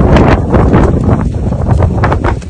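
Strong wind in a snowstorm buffeting the microphone: a loud, gusty rumble.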